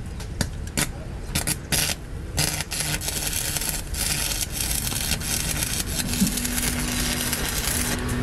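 Stick arc welding on a truck's rear axle spindle. It starts with a few short sputters as the electrode strikes the arc, then from about two and a half seconds in the arc burns with a steady crackling hiss as the bead is laid.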